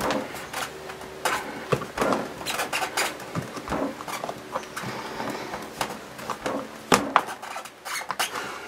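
Fists pressing hard on the clear hinged lid of a We R Memory Keepers Precision Press stamping tool, giving irregular clicks and knocks, with a sharper knock near the end.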